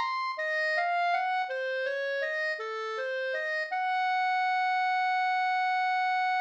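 Computer-rendered clarinet playing alone, unaccompanied: a run of short separate notes moving up and down, about two or three a second, then one long held high note from near the middle to the end.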